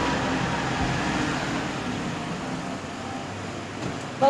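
Vehicle traffic noise: a steady hiss and low rumble of vehicles at a roadside kerb, slowly getting quieter.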